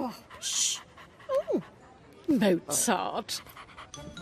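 A small cartoon dog panting and giving several short whines that slide steeply downward in pitch.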